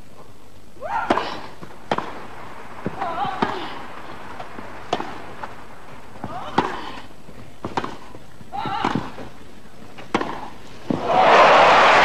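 Tennis ball struck back and forth by rackets on a grass court, a sharp pock every one to two seconds through a rally, with a few short vocal sounds between shots. About eleven seconds in, crowd applause breaks out loudly as the point ends on a passing-shot winner.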